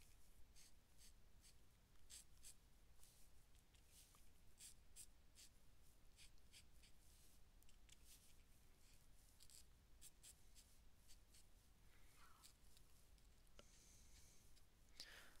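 Near silence, with faint, repeated scratching of a marker tip drawing on paper.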